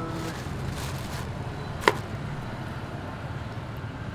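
A single sharp knock about two seconds in, over a steady low background rumble.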